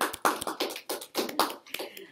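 Brief, scattered applause from a small group of people clapping, the claps coming irregularly several times a second.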